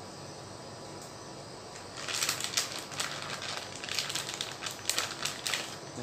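Thin plastic freezer bag crinkling as it is handled, a quick run of crackles starting about two seconds in and stopping just before the end.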